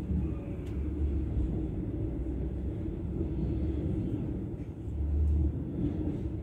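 A passenger train running, heard from inside the carriage: a steady low rumble, swelling louder for a moment about five seconds in.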